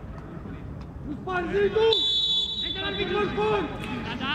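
Referee's whistle: one steady, shrill blast of about two seconds starting near the middle, over voices calling out across an open football pitch.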